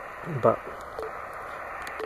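Yaesu FT-817 HF transceiver receiving on the 40-metre band in LSB through its speaker: a steady hiss of band noise, with two brief low tones near the start and about a second in. No buzz from the switching buck converter powering the radio is heard on the band.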